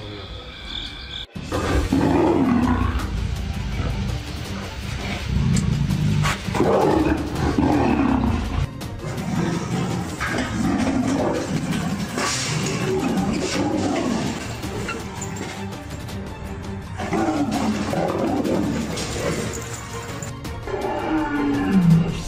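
Tigers and a lion roaring and snarling in a fight: repeated loud roars, each falling in pitch, coming every second or two, with music underneath.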